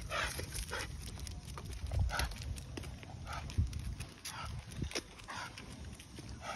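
Footsteps and scuffs of a dog walk on a pavement, with the leashed pit bull pulling ahead: short irregular knocks and shuffles at an uneven pace.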